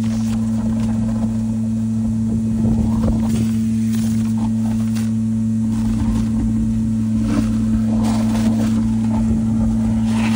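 A septic pump truck's vacuum pump runs with a steady hum. The suction hose slurps sludge and air from the bottom of a nearly emptied septic tank in uneven surges, one about three seconds in and more from about six seconds on.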